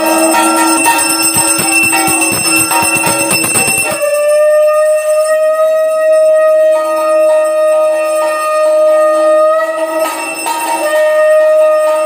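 A small hand bell rung rapidly, as at a puja, over a steady held musical tone. The ringing stops about four seconds in, and the held tone goes on alone, breaking off briefly near the end before it resumes.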